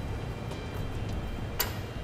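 One short, sharp click of small metal hardware about a second and a half in, as a bolt with a flat washer is worked through a rubber exhaust hanger, over a low steady background hum.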